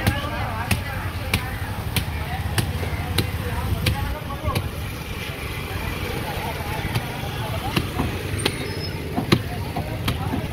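A blade chopping through stingray flesh on a cutting block, striking about one and a half times a second, evenly at first and more sparsely in the second half, over background chatter and a low rumble.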